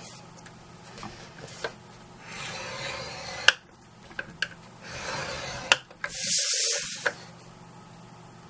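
Scoring stylus drawn along the grooves of a scoring board, pressing score lines into cardstock: three scraping strokes of about a second each, with a few sharp clicks as the tip is set down and lifted.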